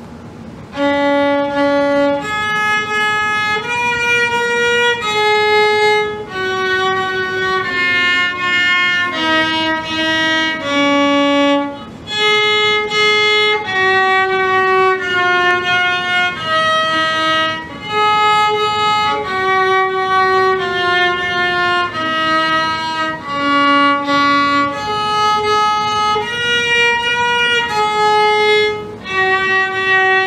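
Violin bowed in a slow, simple melody of separate held notes, about one note a second, with short breaks between phrases.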